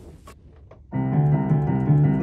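A piano starts playing about a second in, several notes sounding together and ringing on as new notes come in, after a second of faint soft clicks.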